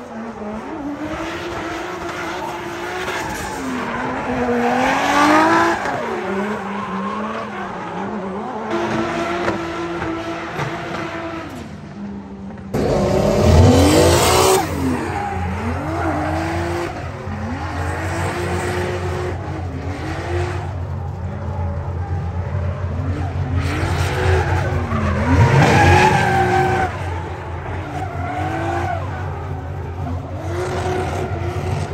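Drift cars' engines revving hard, rising and falling in pitch as they slide sideways through the corners, with tyres squealing. The sound changes abruptly about thirteen seconds in to a deeper, louder car.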